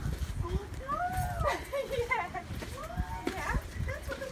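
Indistinct voices of people talking, with footsteps thudding on stone stairs underneath.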